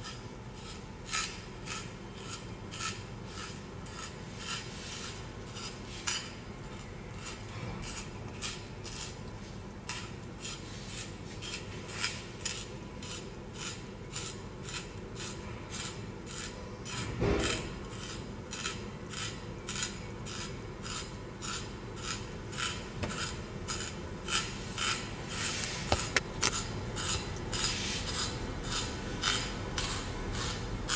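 A carrot being twisted by hand through a handheld stainless-steel spiral slicer, its blade shaving the carrot into spirals with a steady rasping rhythm of about two strokes a second. A louder bump about halfway through and a couple of sharp clicks near the end.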